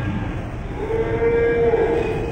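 A single held musical note, steady in pitch, sounding for about a second from a little before the middle, as the music winds down.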